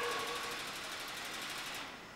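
Steady machine whine over a hiss: a few even tones that fade out within the first half second, then the hiss alone, which drops off sharply near the end.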